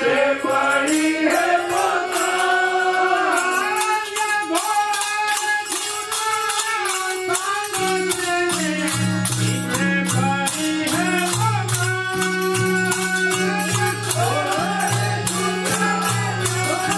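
An Indian devotional song sung to harmonium accompaniment, with a steady jingling hand-percussion beat. Low sustained notes come in about eight seconds in.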